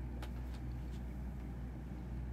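Steady low background hum with a couple of faint clicks about a quarter and half a second in.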